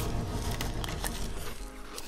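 Biting into and chewing a white-chocolate high-heel shoe, with a few sharp crunches in the middle, over light background music.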